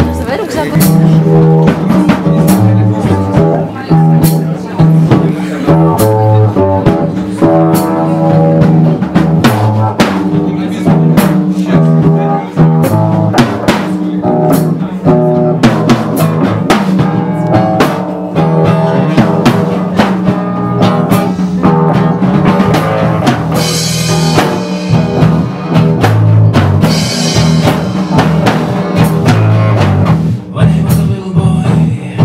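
Live rock band playing: a drum kit keeps a driving beat of bass drum and snare under electric and acoustic guitars.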